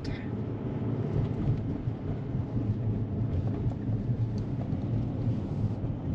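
Steady low rumble of road and tyre noise heard inside a moving car's cabin.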